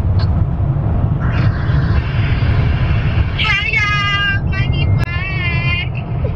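Steady low rumble of car cabin noise, with high-pitched excited voices over it from about three and a half seconds in.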